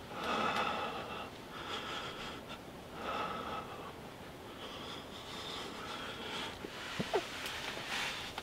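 A person breathing close to the microphone, a steady series of soft breaths through the nose about every one and a half seconds. A click and a short squeak come near the end.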